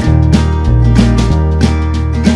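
Background music: an instrumental stretch of a song with strummed acoustic guitar over low bass notes and a steady beat of about three strikes a second.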